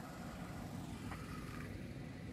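Faint, steady outdoor background noise with a low rumble, with a faint short tone about a second in.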